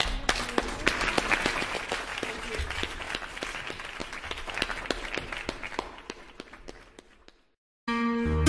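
Audience applause at the end of a song, a dense patter of clapping that fades away over several seconds. After a brief silence near the end, plucked guitar strings begin the next song.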